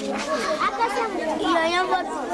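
A group of children chattering all at once, several high voices overlapping, with no words standing out.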